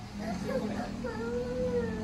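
A young girl whimpering and wailing in long, wavering cries, distressed that her daddy is leaving. A steady low hum runs underneath.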